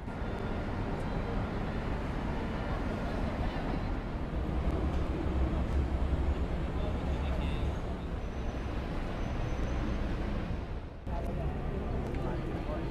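Busy street ambience of an open-air market: a crowd murmuring and traffic running, with a low rumble that swells in the middle. The sound dips briefly about eleven seconds in.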